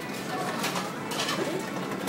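Indistinct background chatter of voices in a busy restaurant dining room, a steady murmur with no single loud event.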